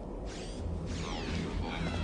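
Electronic sci-fi sound effect: several high tones slide downward together over a low rumble that builds from about half a second in.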